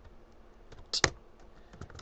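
Computer keyboard keystrokes: a few light key clicks, the loudest a close pair about a second in, as a line of text is finished and a new line started.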